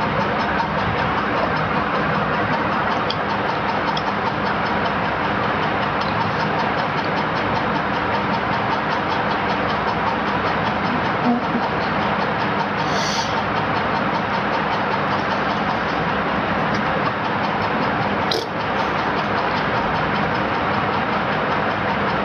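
Steady, loud rushing noise with no clear tone, broken only by a brief high hiss about 13 seconds in and a sharp click about 18 seconds in.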